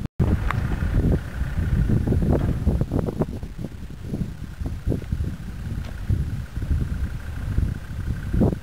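Gusty wind buffeting the microphone over a Land Rover Defender's engine running, a rough, uneven low rumble with a brief cut-out at the very start.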